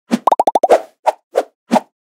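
Cartoon-style popping sound effect for an animated logo: a quick run of short bubbly pops, each dipping slightly in pitch, then three separate pops about a third of a second apart.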